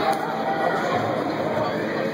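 Indistinct chatter of voices, with no single clear speaker, filling a large indoor ice rink.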